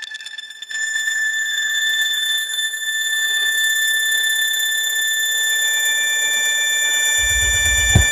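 Electronic music breakdown: a sustained high, alarm-like synth tone comes in about a second in and holds steady with no beat. A deep bass enters near the end.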